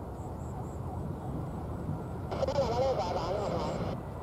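Low, steady jet-engine rumble of an Airbus A330 on final approach with gear down. A person's voice cuts in about two seconds in and stops abruptly a second and a half later.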